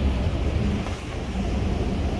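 Wind buffeting the microphone, a low rumbling noise with no distinct events.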